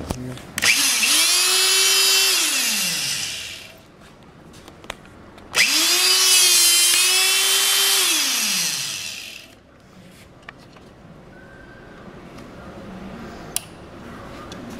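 SHP-20 electro-hydraulic hole punch running twice as it punches through steel flat bar: its electric motor drives the hydraulic pump, spinning up to a steady high whine, holding, then winding down with a falling pitch each time.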